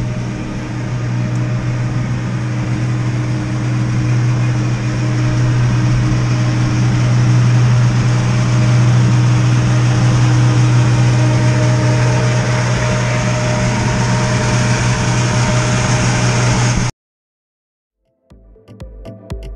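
Aircraft engines running on the ramp: a loud, steady drone with a high whine over it. The sound cuts off abruptly about a second before the end.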